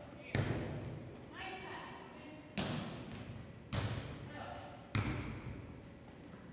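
A volleyball being hit back and forth: four sharp smacks of hands and forearms on the ball, one to two seconds apart, each ringing on in the echo of a large gym.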